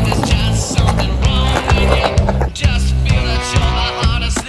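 Skateboard on concrete, with wheels rolling and the board hitting the ground, mixed in with rock music that has a steady beat.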